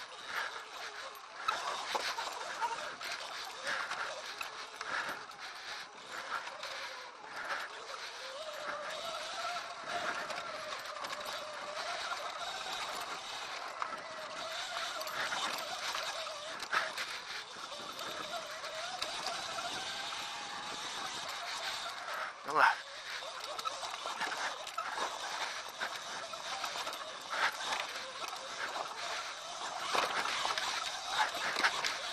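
Electric dirt bike motor whining, its pitch rising and falling with the throttle as the bike climbs a rocky trail, over the rattle and crunch of tyres and chassis on loose rock. A single sharp knock about two-thirds of the way through is the loudest sound.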